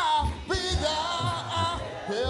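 A gospel singer's solo voice drawing out long, wavering notes that slide up and down, with a new phrase beginning about half a second in.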